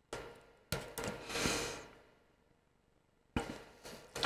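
Small scissors snipping a cotton wick: a few faint, sharp cuts, near the start, under a second in and again past three seconds, with a soft rustle of cotton in between.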